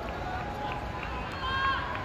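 Distant voices of players calling across an open sports field, with one higher, drawn-out shout about one and a half seconds in, over a steady low rumble.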